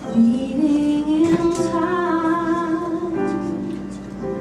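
A woman singing a musical theatre ballad into a microphone, sliding up into one long held note of about three seconds that ends near the end, over soft piano accompaniment.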